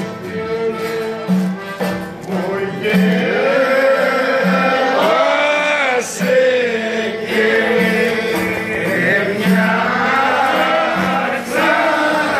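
Greek folk music played live on clarinet and violin, with men's voices joining in singing from about three seconds in.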